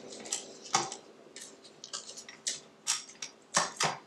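Spatula scraping the sides of a stainless steel stand mixer bowl of thick cheesecake batter: a string of short, separate scrapes and taps, with the mixer stopped.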